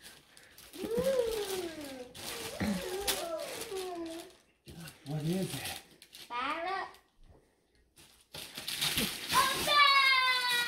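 Young children's wordless voices, pitch rising and falling in short calls, with a longer falling call near the end, over crinkling of brown wrapping paper being torn off a present.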